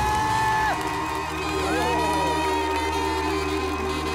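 The instrumental ending of a trot song: a saxophone plays two long held notes that scoop up into pitch over the band, with the audience cheering.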